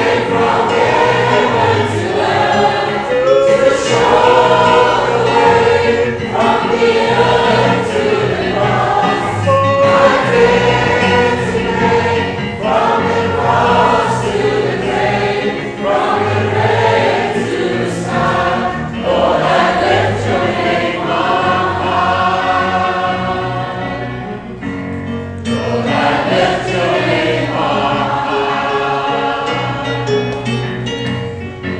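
Church congregation and choir singing a praise song together, loud and continuous, with a brief lull about 25 seconds in as the refrain ends and the next verse begins.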